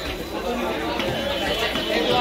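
Several people talking at once in a market, with a faint knock of a knife on a wooden chopping block.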